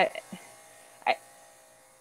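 A woman's voice over a call, saying "I" at the start and again about a second in, with pauses. Under the words is a faint steady electrical buzz.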